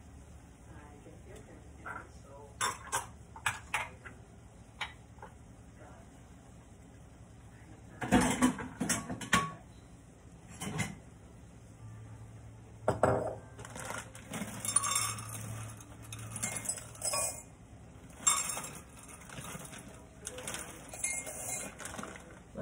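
Dry fusilli pasta being poured and shaken into a glass bowl: scattered light clicks, a loud burst of rattling about eight seconds in, a couple of single knocks, then long stretches of dense rattling clinks against the glass.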